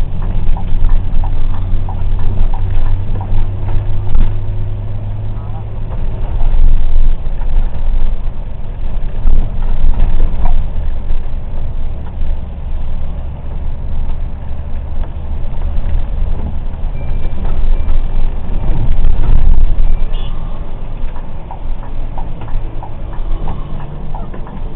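A moving car's engine and road noise, recorded inside the cabin by a dashcam's own microphone: a low rumble that rises and falls in loudness.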